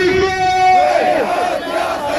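Crowd of protest marchers chanting and shouting slogans together, many voices at once.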